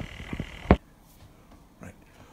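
A man chuckling in a few short, irregular pulses. About three-quarters of a second in, the sound cuts off abruptly to quiet room tone.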